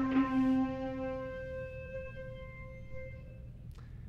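A single synthetic note generated by the NSynth WaveNet autoencoder from the averaged embeddings of a bass note and a flute note, a blend with some of the timbre of both. Its strong lowest tone fades after about a second and a half, while the upper harmonics ring on and die away about three and a half seconds in.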